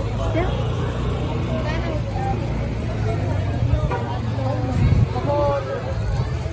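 Busy outdoor street ambience: several people talking over one another, over a steady low rumble of traffic.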